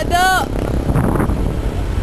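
A brief high-pitched shout, then a steady low rumble of wind and handling noise on a small handheld camera's microphone.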